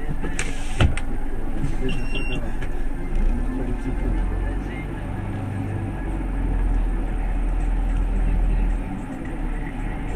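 A bus's diesel engine running at idle, heard from the driver's seat as a steady low rumble, with one sharp knock about a second in.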